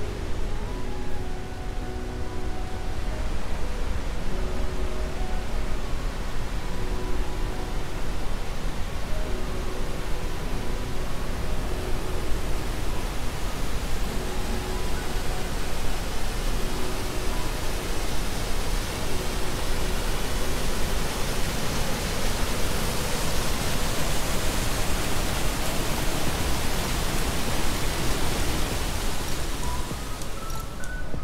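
Steady rushing roar of the Rhine Falls' water pouring over rocks into the river, growing louder and hissier in the last third. A faint melody of held notes sits under it in the first half.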